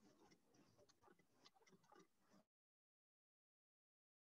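Near silence: faint, irregular clicking and rattling of shredded plastic flakes being poked down into the hopper of a small injection-moulding machine. It cuts off to dead silence about two and a half seconds in.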